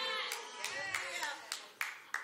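Congregation responding during a sermon pause: a few scattered hand claps mixed with faint voices calling out.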